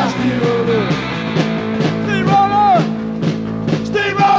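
Punk rock band playing live: electric guitar and drums at a steady beat, with a sung vocal line that swoops down about two seconds in.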